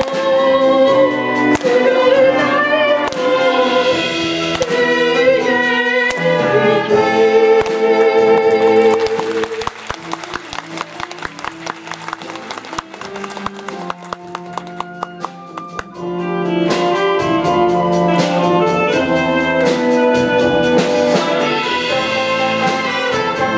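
School wind band playing an instrumental interlude of an enka arrangement, with brass and flutes. About halfway through it drops to a quieter passage over quick percussion ticks, then swells back to full band a few seconds later.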